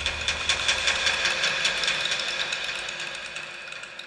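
Sound design for a TV channel ident: a fast run of ticking clicks, about six a second, over high sustained tones, fading out steadily.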